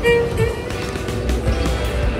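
Violin music, its notes clear in the first half second and then fainter under street noise with a low rumble.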